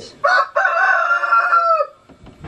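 Rooster crowing: a short opening note, then one long held call whose pitch drops off near the end.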